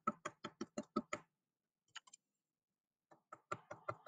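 A paint-dipped cork tapped repeatedly onto paper on a tabletop: a run of quick light knocks, about six a second, then a pause, then another run of taps near the end.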